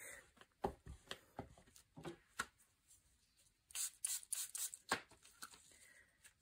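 Faint small clicks, taps and rustles of craft supplies being handled on a work table, with a denser cluster of sharper clicks about four seconds in.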